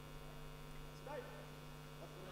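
Faint, steady low electrical hum in the recording, with a brief faint sound about a second in.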